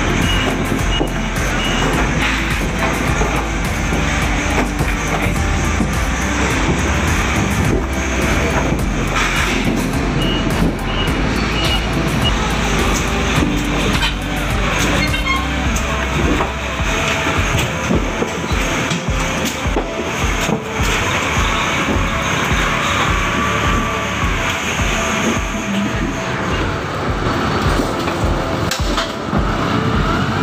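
Engine noise from a truck and forklift in a busy loading yard, mixed with background music. About halfway through, a steady low beat of two to three pulses a second comes in.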